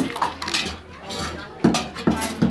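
A child handling old metal dishes and utensils on a wooden play counter: a few clinks and clanks, the sharpest about three quarters of the way in.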